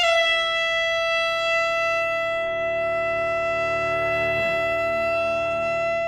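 An alto saxophone starts suddenly and holds one long, steady high note full of overtones, with a bowed cello sustaining lower notes beneath it. The cello makes a short downward slide a little past four seconds in.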